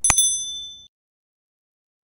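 A click, then a bright bell-like ding that rings out and fades within about a second: a subscribe-button notification sound effect.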